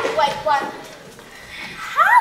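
Children's voices on a theatre stage: a short burst of high, pitched speech or exclamation at the start, then quieter stage sound.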